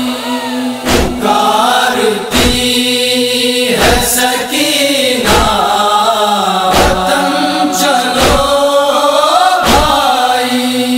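Noha lament: voices chanting a slow, mournful melody over a steady held drone, with a heavy beat about every one and a half seconds.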